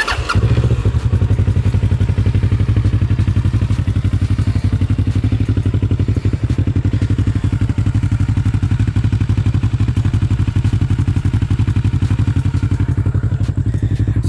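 Kawasaki Ninja 650R's parallel-twin engine starting up right at the beginning, then idling steadily with an even, rapid exhaust pulse.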